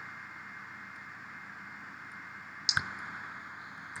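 Two quick clicks close together, a little under three seconds in, typical of a computer mouse button, over a steady faint hiss from the recording.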